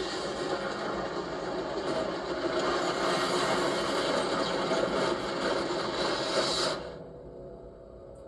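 Movie-trailer fire and blast sound effect played through a television: a dense rushing noise that swells and then cuts off suddenly about seven seconds in.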